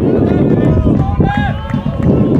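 Voices shouting across a football pitch during play, with one clear call about a second in, over a loud, steady low rumble.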